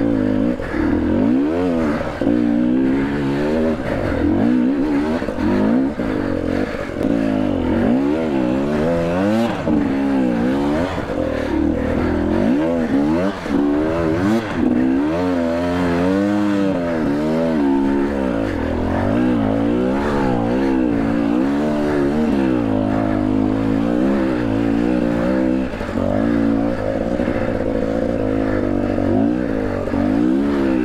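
KTM EXC 250 TPI two-stroke single-cylinder dirt bike engine under riding load, its revs rising and falling every second or so as the throttle is blipped and rolled off over rough trail.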